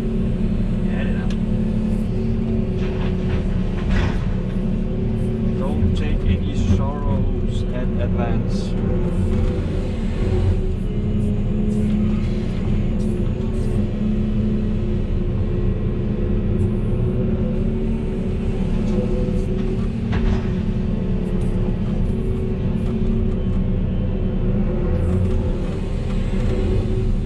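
Volvo EC380E excavator's diesel engine and hydraulics running steadily under load, heard from inside the cab, with brief knocks from the bucket and boom working.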